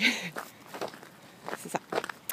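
Footsteps in snow: a few soft steps at walking pace.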